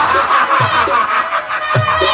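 Live jatra accompaniment, with sustained instrument tones and drum strokes, and a man's mocking laugh over the stage microphone.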